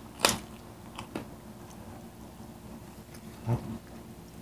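Close-up eating sounds: a sharp crunch from biting crispy fried food about a quarter second in, a few smaller clicks of chewing around a second later, and a short low thump near the end.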